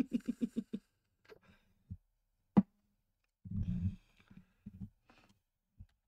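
A woman laughing: a quick run of about seven 'ha' pulses in the first second, then a few more scattered bursts of laughter.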